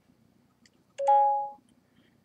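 Samsung Galaxy Note 5 camera sounding a short two-note electronic chime about a second in, which marks the end of a six-second video collage recording.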